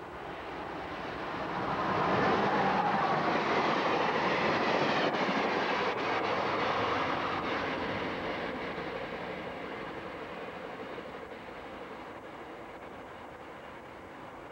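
Amtrak passenger train hauled by an AEM-7 electric locomotive passing by. The sound of wheels on rail swells to its loudest about two seconds in, with a few clicks, then fades slowly as the train draws away.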